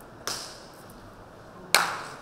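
Two sharp hand claps about a second and a half apart, the second louder: a standing monk's emphatic claps in Tibetan Buddhist monastic debate.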